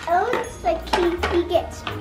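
A young child's wordless, high-pitched vocalizing in short bursts, over background music.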